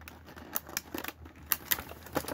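Folding pocket knife blade working at a plastic blister pack on a cardboard toy card: a series of sharp, uneven clicks and ticks as the blade catches and cuts the plastic.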